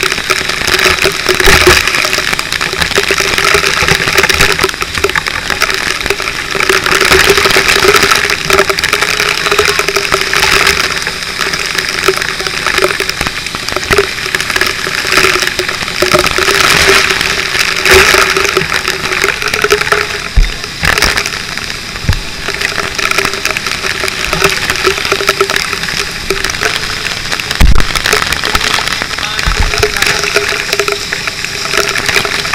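Fire hose nozzle spraying water in a steady loud rush, with a steady low hum underneath and a few dull thumps in the last third.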